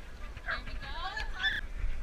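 A dog's short, high-pitched yips and whines, several in quick succession between about half a second and a second and a half in.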